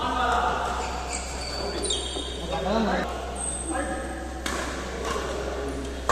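Doubles badminton rally: sharp racket hits on the shuttlecock about once a second, with shoes squeaking on the court mat between them, in a large echoing hall.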